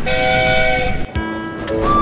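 Two-note steam whistle sound effect: a higher chord with a hiss over it held about a second, then a lower chord held about a second.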